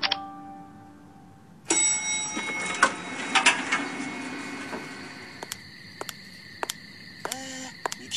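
An electronic chime sounds suddenly about two seconds in and rings on. A steady high hum follows, with a series of sharp, short taps in the second half.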